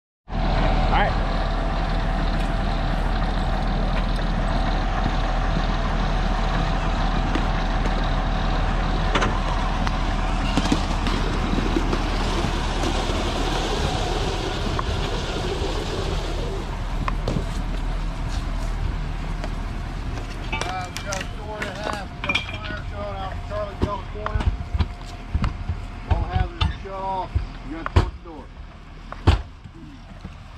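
Fire engine running steadily with a constant low hum. Later come voices and a few sharp metal strikes: a flat-head axe driving a forcible-entry tool into a door.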